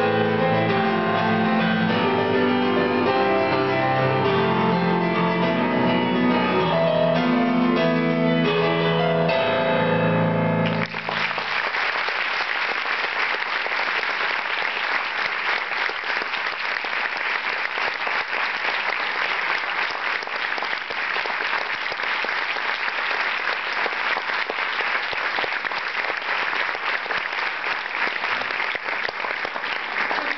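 Solo grand piano playing, with the piece ending suddenly about eleven seconds in. A long round of audience applause follows.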